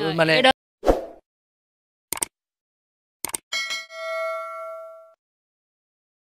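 Edited-in subscribe-button sound effect: three short clicks, then a bright bell-like ding about halfway through that rings for about a second and a half before fading.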